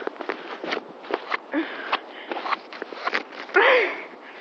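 Irregular soft taps and rustles of someone walking on sand with a handheld phone, then a short, loud, breathy vocal sound about three and a half seconds in.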